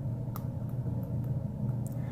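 A few faint clicks from a steel hook pick working the pin stack of a brass pin-tumbler padlock under tension, over a steady low hum.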